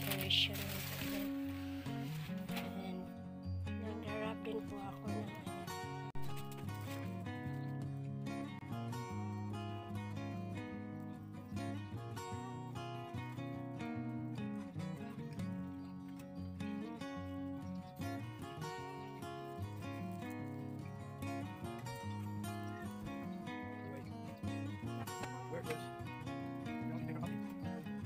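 Background music with steady held notes changing in chord-like steps.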